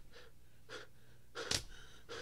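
A man's short gasping breaths, the sharpest about one and a half seconds in.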